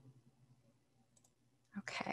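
Near silence with a faint low hum, then a short cluster of loud clicks close to the microphone near the end.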